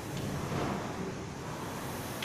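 Rowing machine's fan flywheel whooshing steadily as an athlete pulls on it.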